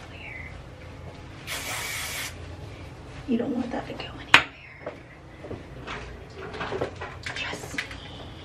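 One short hiss of an aerosol hair spray can sprayed onto hair, lasting under a second, about a second and a half in. A sharp click follows a little after four seconds in.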